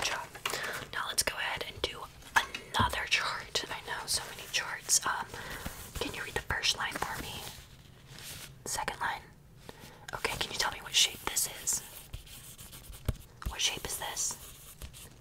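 A woman whispering softly and close to the microphone, with short pauses between phrases.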